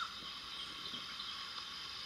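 Steady, even hiss of outdoor background noise.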